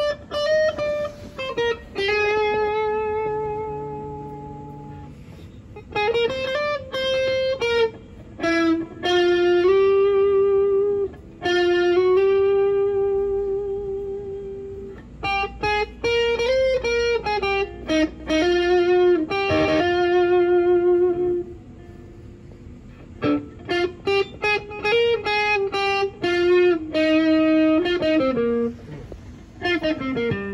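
Squier Stratocaster electric guitar played solo: a slow single-note melodic lead with string bends and long held notes that fade out, broken by short runs of quicker notes.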